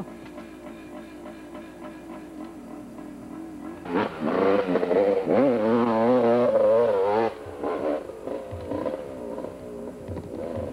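Yamaha YZ250 two-stroke dirt bike engine revving under load as it climbs a dirt hill. It is faint at first, turns suddenly loud about four seconds in as the bike comes close, with the revs rising and falling, then drops away after about seven seconds.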